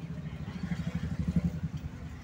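Low, uneven vehicle rumble of a car moving through traffic, heard from inside the cabin, swelling to its loudest about one and a half seconds in.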